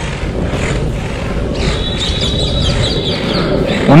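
Oxelo Carve 540 longboard's wheels rolling over rough, patched asphalt with a steady low rumble. From about a second and a half in, a bird chirps a quick run of high notes for about two seconds.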